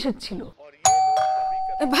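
Electronic ding-dong doorbell chime: a sudden high note about a second in, followed by a lower second note, ringing on and slowly fading.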